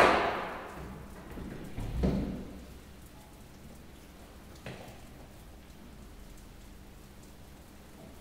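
A loud sudden bang that fades out slowly over about a second and a half, followed about two seconds in by a second, deeper thud and, near five seconds, a faint knock.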